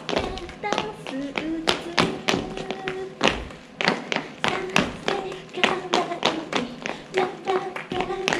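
Ankle boots stomping and tapping on a wooden stage floor, about three strikes a second, as dancers step and jump, with women's voices singing over the footfalls.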